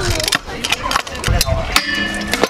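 Clattering and knocking of skateboard and scooter wheels and decks on concrete and a metal ledge rail, with gusts of wind on the microphone; near the end a steady metallic ringing grind begins on the rail.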